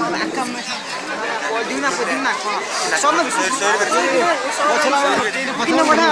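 Several people talking at once near the microphone: overlapping chatter with no single clear voice, going on without a break.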